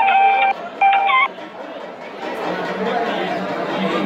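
A loud, steady horn-like tone sounded in two short blasts on one pitch, the second ending with a slight upward bend, followed by a crowd of voices chattering.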